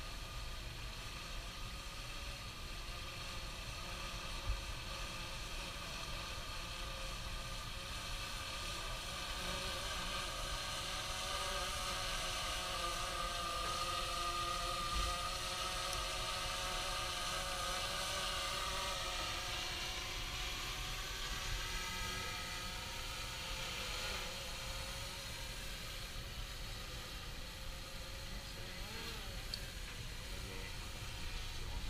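Multi-rotor camera drone hovering, a whine of several steady pitches that waver slightly. It grows louder about a third of the way in and fades back after about two-thirds.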